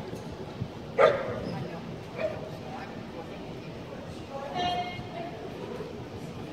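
A dog barks sharply once about a second in, gives a shorter bark about a second later, and makes a longer, higher call near the end, over the murmur of people in a big hall.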